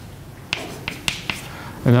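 Chalk writing on a blackboard: several short, sharp taps and strokes as letters are written.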